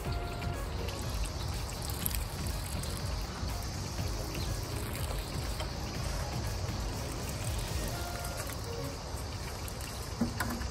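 Water pouring steadily from a plastic watering can's sprinkler rose onto freshly backfilled soil around a new planting.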